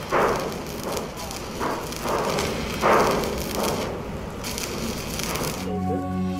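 Electric arc welding on steel floor plates: the arc crackles and sputters unevenly, with several louder surges. Music starts near the end.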